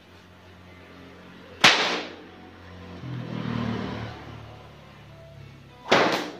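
A 2.5 m pecut bopo, a traditional Ponorogo whip, cracking sharply twice: once about a second and a half in and again at the very end.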